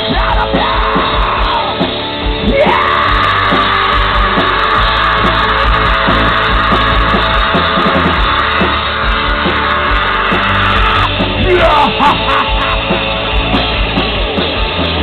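Live rock band playing loudly: electric guitar, electric bass and a drum kit, with a shouted vocal line ending just at the start. A long held high note sits over the band through the middle.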